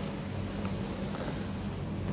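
Steady low electrical hum with a faint hiss: room tone with no distinct sound event.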